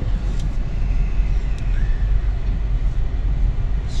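Steady low rumble of a car's engine and tyres heard from inside the cabin as it rolls slowly.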